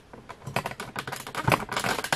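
Typing on a laptop keyboard: a quick, irregular run of key clicks.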